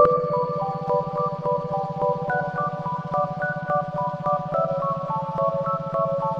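Relaxing electronic ambient music tuned to 432 Hz: a steady pulsing low drone under a melody of short, bright notes stepping up and down about three to four a second.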